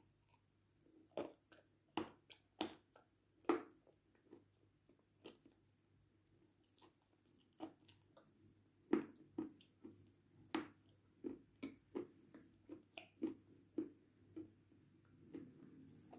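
Crunching bites and chewing of a dry bar of edible blue clay, faint and close: a few sharp crunches spaced about a second apart early on, then a quicker run of crunchy chews through the second half.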